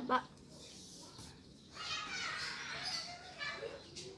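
A child's soft, high-pitched voice: a brief vocal sound at the start, then a longer wordless murmur from about two seconds in.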